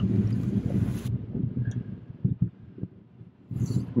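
SUV engine running with low road noise as it drives a tight turn around the pylons, with wind hiss on the microphone for about the first second. A few short knocks come about two and a half seconds in.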